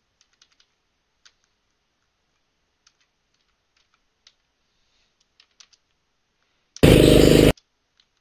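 Light computer keyboard and mouse clicks as cursor keys step through the video frame by frame. Near the end, a loud snatch of about 0.7 s of the onboard GoPro kart audio plays from the editing timeline: kart engine noise, cut off abruptly.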